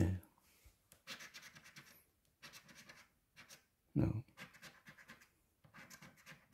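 A coin scratching the coating off a scratch-off lottery ticket. It comes in quick strokes, in short spells of about a second with brief pauses between.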